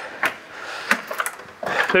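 A few light clicks and knocks from an Airstream travel trailer's entry door and folding metal entry steps as they are climbed.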